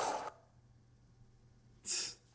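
A police officer's distorted shouted command dies away in the first moment, followed by near silence with a faint low hum. Near the end comes one brief hissing burst.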